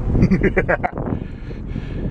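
Cabin sound of a 2011 Caravan minivan driving on its swapped-in 2.0 L common-rail TDI diesel: a steady low engine and road rumble. A man laughs briefly over the first second.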